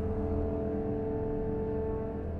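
Chamber orchestra playing slow sustained chords over a low drone bowed by cellos and double basses, moving to a new chord right at the start.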